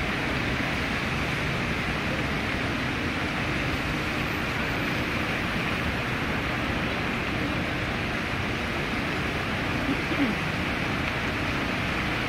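Bellagio fountain water jets spraying and the water falling back onto the lake: a steady hiss of spray.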